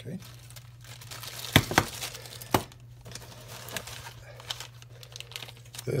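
Clear plastic zip-lock bag crinkling as it is handled, with three sharp clicks between about one and a half and two and a half seconds in, then fainter rustling.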